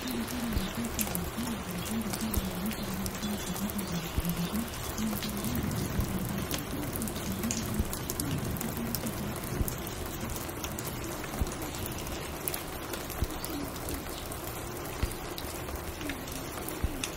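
Steady rain ambience with scattered small clicks and crackles. A low, wavering tone runs under it for the first ten seconds or so, then fades away.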